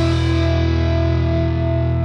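Rock song: distorted electric guitar holding a sustained chord with heavy low end and no vocals; the high end drops away about half a second in.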